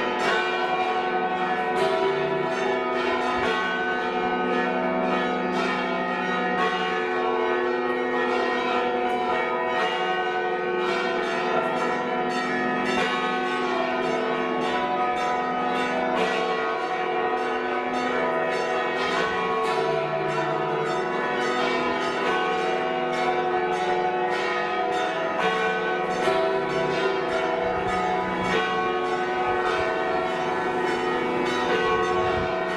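The bells of Tarragona Cathedral's tower, rung by hand by the cathedral's bell-ringers. Several bells of different pitches strike in quick, overlapping succession in one unbroken peal.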